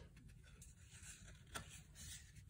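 Near silence, with one faint click of a cardboard trading card being flipped about one and a half seconds in.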